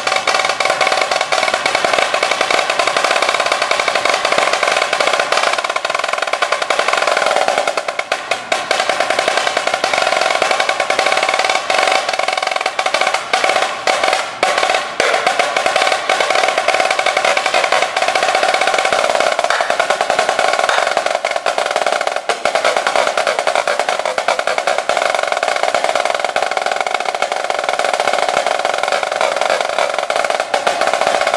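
Yamaha marching snare drum played solo with two sticks: dense, fast rudimental passages and drum rolls that run almost without a break, with a few short gaps in the first half.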